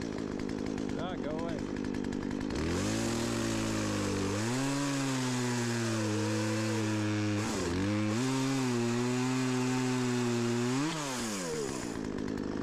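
Chainsaw revving up about two and a half seconds in and running at high speed, dropping briefly and revving back up midway, then winding down near the end.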